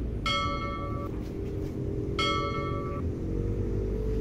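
Two identical bright bell dings about two seconds apart, each ringing for just under a second, over a low background rumble. These are the bell sound effect of a subscribe-button overlay.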